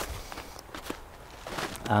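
A person's footsteps walking on a frosty woodland path, a few separate steps.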